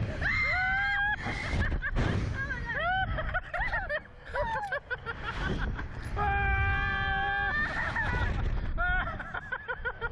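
Riders on a Slingshot reverse-bungee ride screaming and shrieking in short cries as they are flung up and around, with wind rushing over the microphone; one long, held high scream comes about six seconds in.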